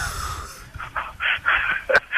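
Breathy laughter from men: a short, hissy burst on a full-range studio microphone, then a few more breathy pulses heard through a thin, narrowband phone line.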